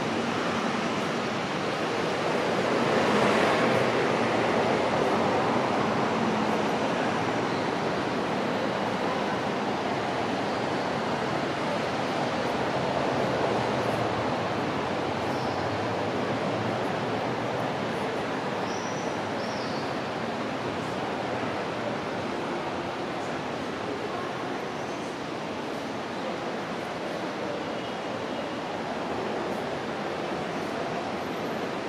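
A steady wash of outdoor city noise, swelling a little about three seconds in and then slowly easing off, with a few faint short high tones near the middle.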